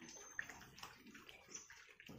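Faint, irregular scuffling and wet clicking from a crowd of puppies milling about and lapping at their food, with a couple of brief high squeaks.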